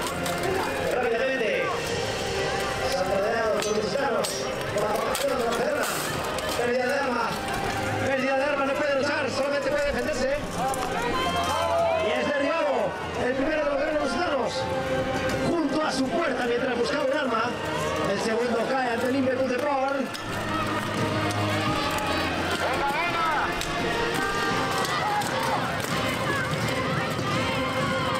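Steel-armoured fighters clashing in a buhurt melee: scattered clanks and knocks of plate armour, shields and weapons against a constant din of shouting voices.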